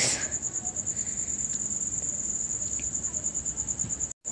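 An insect trilling steadily with a high, fast-pulsing tone, with a brief hiss at the very start.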